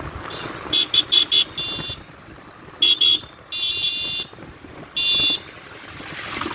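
Vehicle horn honking in a string of toots: four quick beeps, a longer one, two more short beeps, then two longer blasts. Road and wind noise runs underneath.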